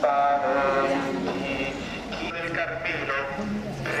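Voices of a procession crowd chanting a prayer litany in unison in Italian, with the response "prega per noi" (pray for us) near the end.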